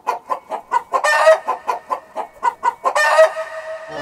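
Hen clucking in a quick run of short calls, about six a second, with a longer drawn-out call about a second in and another near the end.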